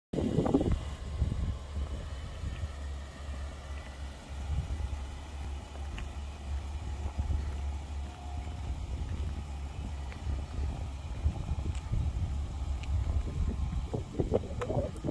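Pickup truck's engine idling with a steady low rumble, after a brief louder noise right at the start.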